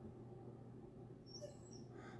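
Near silence, with a few faint, brief high-pitched whimpers from a distant dog about a second and a half in.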